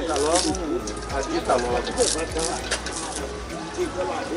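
Indistinct background voices and music-like tones, with a few sharp knocks and creaks from a hand-operated wooden sugarcane mill being worked.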